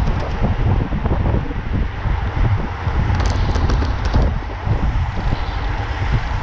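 Wind buffeting the microphone of a camera on a moving road bicycle, a loud uneven low rumble. A few short sharp clicks come about three to four seconds in.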